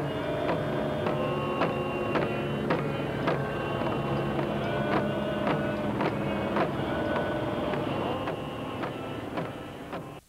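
Hand-held Japanese fan drums (uchiwa daiko) beaten in a steady rhythm of about two strokes a second, under voices chanting on long held notes.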